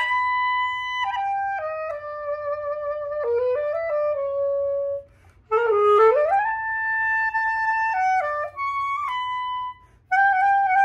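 Unaccompanied clarinet playing a slow samba melody, one line of held notes and short stepwise phrases. A brief breath pause comes about halfway, followed by a quick upward run into a long held note.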